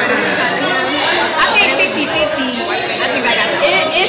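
Several women talking over one another: steady, lively overlapping chatter with no single voice standing out.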